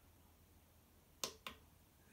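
Two quick fingertip taps on the touchscreen of a Monoprice Mini SLA resin printer, a quarter second apart and a little past halfway through, against near silence.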